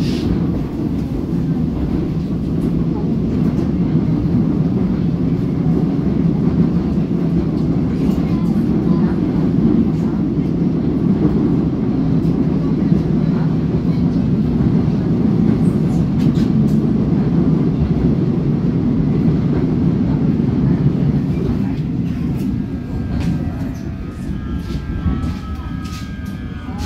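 Interior running noise of a Korail Line 3 electric multiple unit at speed: a steady low rumble of wheels and running gear on the track. Near the end the rumble eases and a faint whine that shifts in pitch comes in.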